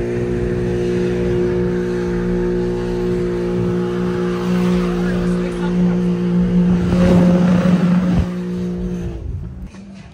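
BMW G80 M3's twin-turbo inline-six held at steady high revs, with a rough tire noise swelling about seven seconds in; the revs drop off near the end.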